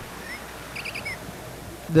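Low background hiss with a quick run of three faint, high chirps just under a second in.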